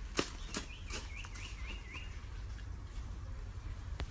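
A bird calling a quick run of about six short, repeated chirps, each sliding down in pitch, over a steady low outdoor rumble. A few crisp crunches of footsteps on gravel come just before the chirps.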